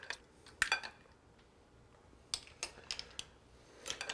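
A serving utensil and mussel shells clinking in a bowl of mussels as they are served: a handful of light clicks, a couple near the start and several more about two to three seconds in.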